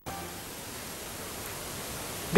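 Steady, even hiss of background noise, room tone with nothing else sounding.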